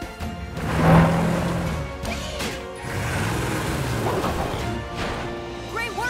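Cartoon sound effects of a heavy log being set down across a gap, with a crash about a second in, over background music.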